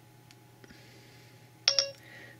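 iPhone 4S Siri activation chime: two quick beeps near the end, the tone that signals Siri has opened and is listening. Before it, near-quiet room tone while the home button is held.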